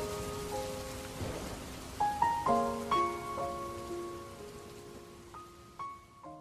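Slow background music of struck, ringing notes over a steady rain-like hiss, growing gradually quieter, with a new group of notes about two seconds in.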